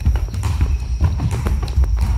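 A quick, uneven run of dull thuds and slaps from bare feet stamping and shuffling on a wooden floor during close karate sparring, mixed with blows landing on bodies and gis.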